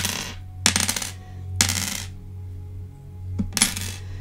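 A handful of small divination charms jingling and clinking together as they are shaken and cast, in four short rattling bursts.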